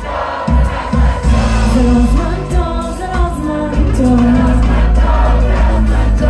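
Live band playing a song with bass and backing instruments while a woman sings the lead.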